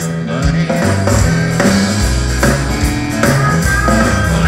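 Live country band playing a song: acoustic and electric guitars, bass and drums.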